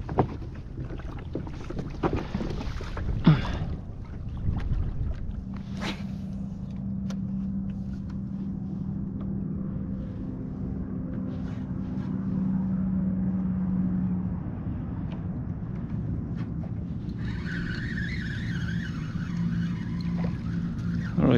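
Small fish being reeled in on a spinning reel from a kayak, the fish hooked on a small shrimp lure. Several sharp knocks of rod and hull handling in the first six seconds, then a steady low hum for about nine seconds.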